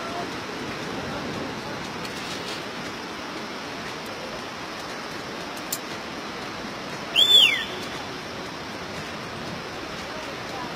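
Steady rushing noise, with a short sharp click near the middle and, about seven seconds in, a loud high whistle that falls in pitch over about half a second.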